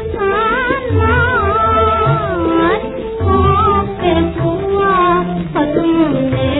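Woman singing a 1940s Hindi film song with a wavering, ornamented melody over instrumental accompaniment, played from a 78 RPM record transfer with no treble above about 4 kHz.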